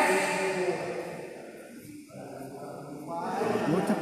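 A man's voice drawn out in a long held call at the start, fading into a quieter middle stretch, then men talking again near the end.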